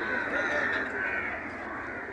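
Faint outdoor background with a bird cawing, crow-like.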